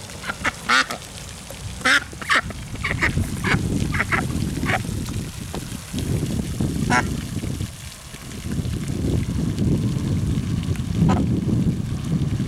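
White domestic duck quacking: a run of short quacks through the first five seconds, then single quacks about seven seconds in and near the end, over a steady low rumble.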